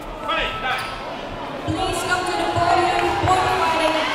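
Voices calling out in a large, echoing sports hall, growing denser and louder about halfway through, with a few dull thuds underneath.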